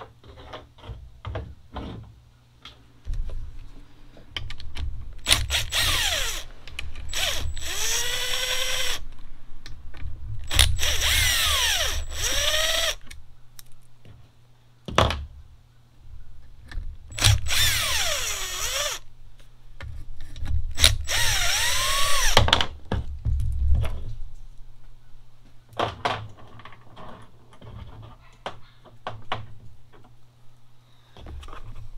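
Cordless drill/driver backing out the fasteners from a diesel air heater's mounting plate during disassembly. It runs in several spurts of a few seconds each, its motor whine rising and falling in pitch. Small clicks and knocks come in between the spurts.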